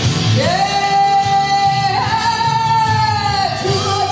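A woman singing into a handheld microphone over backing music: she slides up into one long held note and sustains it for about three seconds, then drops to a lower line near the end.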